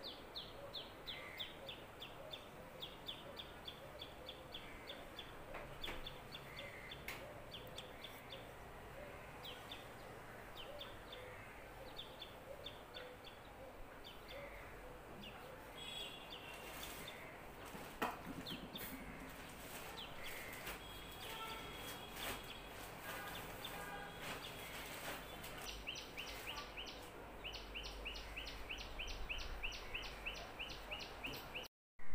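Faint bird chirping: runs of short, high, falling chirps repeating throughout, with a single sharp knock about 18 seconds in.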